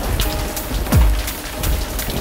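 Steady rain on a surface with a deep rumbling boom of thunder about a second in, over a faint held music chord.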